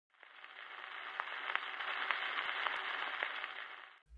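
Surface noise of a 78 rpm gramophone record turning under the needle in the lead-in groove: a steady hiss with scattered sharp clicks, fading in shortly after the start and fading down near the end.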